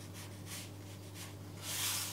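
Faint scratching of a small paintbrush dragged across textured NOT-surface watercolour paper in a few short strokes, the loudest near the end.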